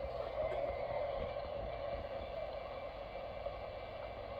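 Quasar VHS camcorder's small built-in speaker playing back a home-video tape: a steady hiss with a low hum underneath.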